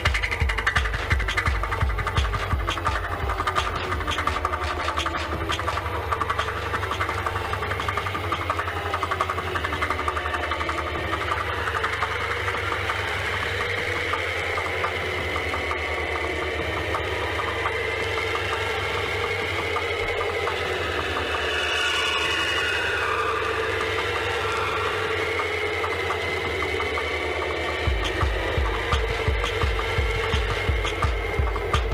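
Hardtek/free tekno mix in a breakdown: the kick drum drops out early on and a held, buzzing bass drone steps between notes under layered synth textures, with a hissing swell about two-thirds of the way through. The regular kick drum comes back near the end.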